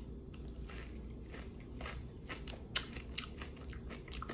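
A person chewing a mouthful of crunchy Special K cereal with dried strawberries close to the microphone: a run of small, irregular crunches, one a little louder about two-thirds of the way through.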